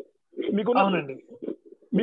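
A man's voice over a video call: one short, drawn-out utterance falling in pitch, followed by a few faint short sounds.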